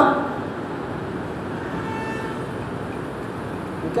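Steady background hiss of the recording in a pause of the talk, with a faint, brief pitched tone about two seconds in.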